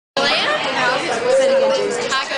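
A woman's voice talking loudly, starting abruptly a moment in after silence.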